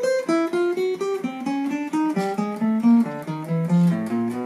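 Steel-string acoustic guitar played one note at a time in a chromatic exercise: four-note groups rising a semitone at a time, fingers 1-2-3-4 on frets 5 to 8, each group a string lower, so the run steps down from the high strings towards the low ones at about four to five notes a second.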